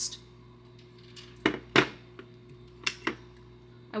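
Three or four short, sharp knocks and clinks, the loudest a little under two seconds in, as a gumball-machine savings bank with a glass globe is set down on a desk and its lid is taken off.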